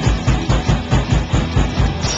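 Live rock band playing: drum kit hammering fast, even hits, about seven a second, under distorted electric guitars and bass guitar.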